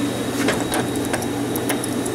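Light metallic clicks and rattles, several in quick succession, from tools and a drawer being handled at a steel tool chest, over a steady low hum.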